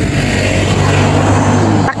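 A Ford taxi car driving past close by, its engine and tyre noise building to a peak near the end and dropping off suddenly, over a steady low hum.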